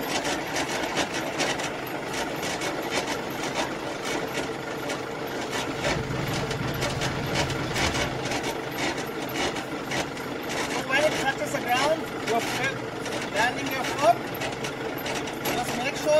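Semi-trailer landing gear being hand-cranked down: the crank handle and gearbox turning over and over with a steady run of clicks and grinding.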